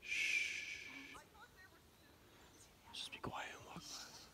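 A person hushing with a long "shhh" lasting about a second, then a short soft whispered sound near the end.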